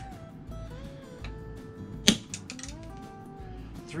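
A single sharp shot from an HPA-powered airsoft bolt-action sniper rifle (JG Bar 10 with a Wolverine Bolt M) about two seconds in, preceded by a lighter click. Soft background music with held notes plays throughout.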